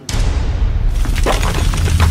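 Intro sound effect of a played video: a deep rumble that starts suddenly, with crackling, shattering noise over it.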